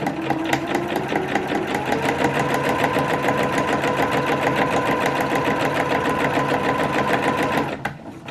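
Domestic electric sewing machine stitching at a steady speed, a rapid, even clicking of the needle over a motor hum that climbs as it gets up to speed in the first second or so, then stops just before the end. It is running straight seams of stay stitching around the edges of satin pieces to keep them from stretching.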